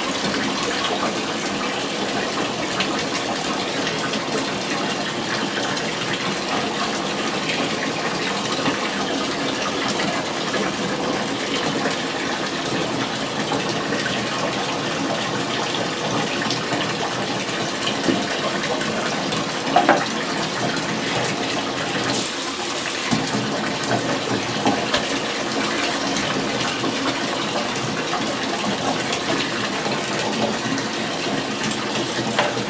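Tap running steadily into a bathtub that is already holding water. A few brief louder sounds stand out in the second half.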